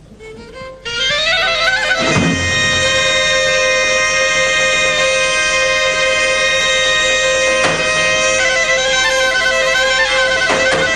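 Two Greek folk clarinets start playing about a second in, with long held notes and ornamented runs, joined by a few deep strikes on a daouli bass drum.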